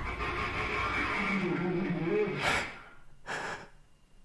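A person breathing hard and gasping. A low, wavering voiced sound comes in about a second in, then sharp breaths follow in the second half.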